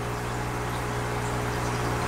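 Aquarium aeration running: a steady low hum from the air pump under a constant bubbling hiss of air streaming up through the water.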